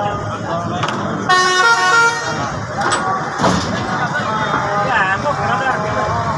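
A vehicle horn blares once for about a second, near the start, over the chatter of a crowd of men.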